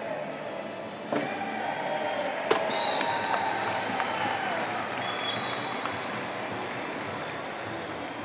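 Indoor sports-hall ambience at a wheelchair rugby game: crowd chatter, with sharp bangs about one and two and a half seconds in and two short high-pitched tones, around three seconds in and again near the middle.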